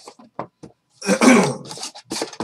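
A man clearing his throat, a loud rasp about a second in lasting most of a second. Before it come a few light knocks of a cardboard card box being handled.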